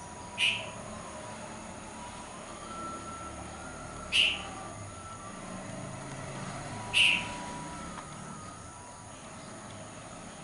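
Three short, sharp bird chirps, each a few seconds apart, over a faint steady background.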